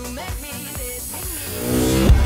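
Electronic background music at a change of track. The dance beat drops out, gliding synth tones and a hiss fill the gap, and the level rises into a heavy beat of the next song at the very end.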